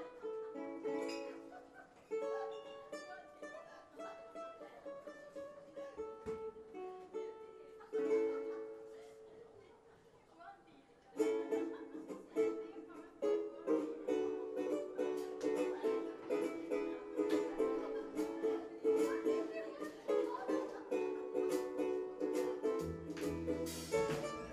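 Ukulele playing a song's intro: loose picked notes and chords at first, settling into steady rhythmic strumming about eleven seconds in. A bass comes in with low notes near the end.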